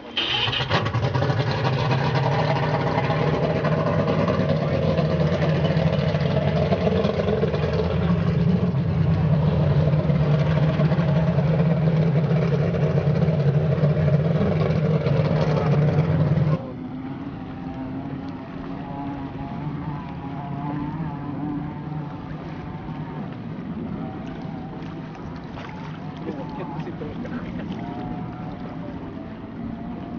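Mercury V6 outboard on an F1 racing powerboat starting up and running steadily, loud and close, for about sixteen seconds. The sound then drops to a quieter, distant engine noise.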